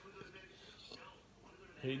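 Quiet pause with faint whispered or murmured speech, then a man starts speaking near the end.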